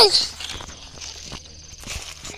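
Footsteps on a leaf-strewn trail path: irregular steps and scuffs at a walking pace.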